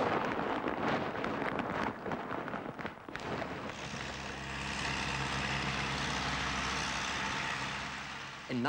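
A building collapsing in demolition, with rubble crashing and clattering down. About three seconds in, this gives way to the steady running of a tracked loader's diesel engine.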